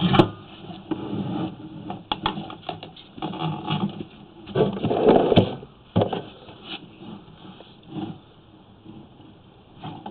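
Sewer inspection camera on its push cable being fed down a main line, with irregular knocks and scraping as the cable and camera head rub along the pipe. The loudest stretch of scraping comes about halfway through, then it dies down to scattered knocks.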